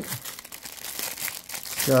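Clear plastic bag wrapped around a leather knife sheath crinkling as hands handle it, a dense run of small crackles.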